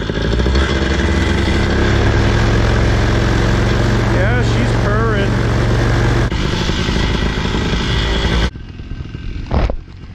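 Paramotor engine running at a steady speed just before launch. A wavering voice breaks in briefly about four seconds in, and the engine sound drops away suddenly near the end.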